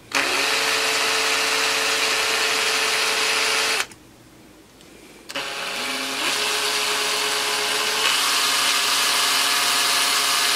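Cordless drill running slowly, boring a hole through a multimeter's moulded plastic front panel with a bit that seems blunt. It stops just before four seconds in and starts again about a second and a half later, its pitch rising as it speeds up, then runs steadily.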